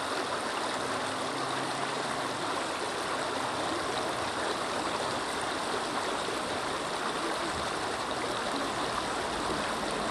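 Shallow creek water flowing and rippling, a steady even rush of running water.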